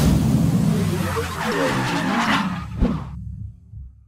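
Logo-intro sound effect: a loud rumbling, swishing sweep with a sharp hit near the end, then fading out.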